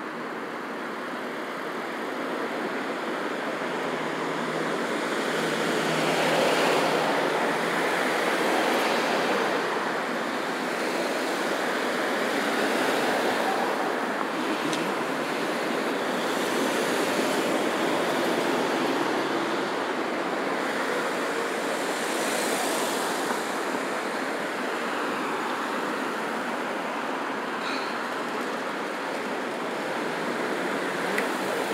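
Road traffic: cars, SUVs and a pickup driving through an intersection, their tyre and engine noise swelling and fading as each one passes, with several louder passes.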